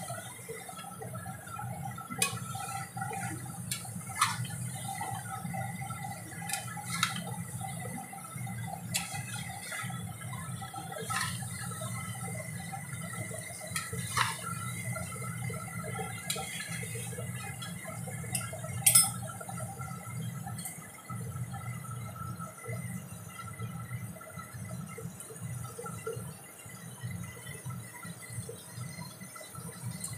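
Chicken and potato curry cooking in a steel pan over a gas burner while a spatula stirs it, scraping and knocking against the pan every few seconds. The sharpest knock comes about 19 seconds in.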